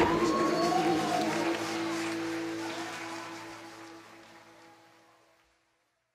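Final chord of a song played by a band with electric guitars and bass, held and ringing out with a couple of sliding higher notes over it, fading steadily to silence about five seconds in.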